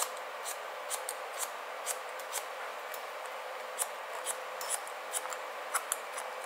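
Haircutting shears snipping through wet hair held against a comb, about two short crisp snips a second, over a steady background hiss.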